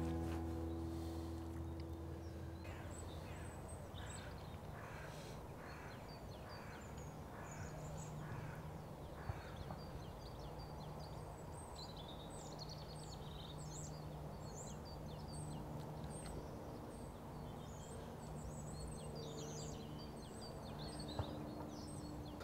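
Quiet outdoor ambience with faint background music, whose opening chord dies away in the first couple of seconds. A bird calls over and over in the first half, and small birds twitter busily in the second half.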